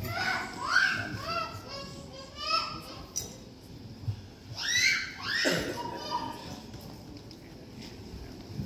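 A young child's high-pitched voice: several short squeals and calls, the last pair about five seconds in.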